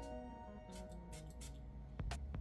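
A few short hissing sprays from a perfume bottle's atomizer onto a paper test strip, about a second in, over quiet background music.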